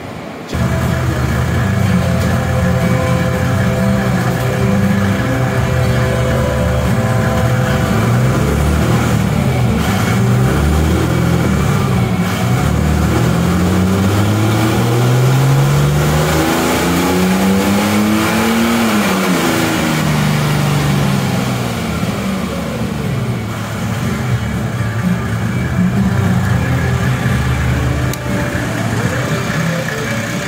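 Mercedes OM606 3.0-litre inline-six turbodiesel, straight-piped with a gutted cat, running under load on a chassis dyno during a pull on the stock ECU. Its pitch shifts up and down through the first third, then climbs in one long sweep to a peak about two-thirds of the way in and falls back.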